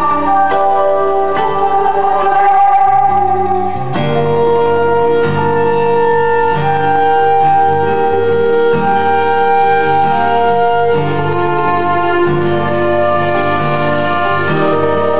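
Folk-rock band playing an instrumental passage live: a fiddle carries the melody, holding one long note through the middle, over strummed acoustic guitar and a steady low bass line.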